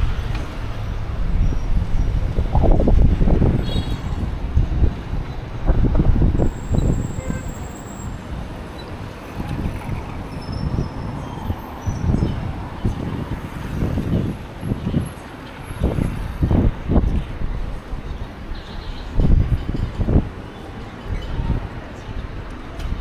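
Busy city street ambience: traffic running, with wind rumbling on the microphone in the first few seconds and snatches of passers-by talking.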